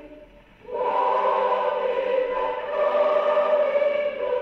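A mixed choir singing a hymn, played from a 78 rpm shellac record on a wind-up HMV 102 portable gramophone. After a short breath between lines, the voices come back in under a second in and hold long sustained notes, with the thin, treble-less sound of an old record.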